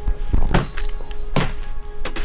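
Footsteps climbing up into a lorry's box body and onto its floor: a handful of dull thunks, the heaviest about half a second and a second and a half in, with background music underneath.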